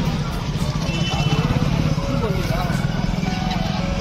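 Vehicle engine running close by with a rapid low pulse, over busy street noise and background voices.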